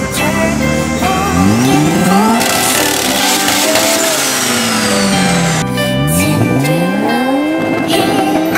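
Mazda RX-7's rotary engine revved hard several times, its pitch climbing and falling, harshest and loudest in the middle, over background music.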